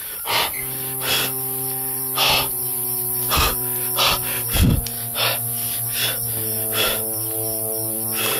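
Background music of low, held synthesizer-like chords that shift a couple of times, with short hissing swishes recurring roughly once a second.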